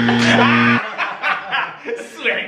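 Men laughing, over a steady low buzzing tone that cuts off suddenly about a second in.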